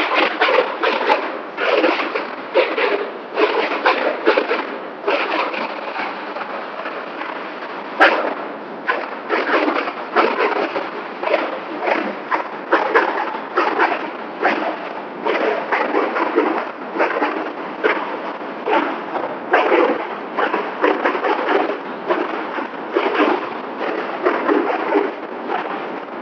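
A large ensemble of Persian dafs, frame drums with jingling rings, played together in a driving rhythm of hand strikes, with a sharp accent about eight seconds in.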